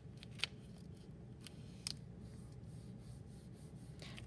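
A sheet of paper being folded and pressed down by hand: faint rustling with a few short, crisp crinkles, the sharpest about half a second in and another just before two seconds.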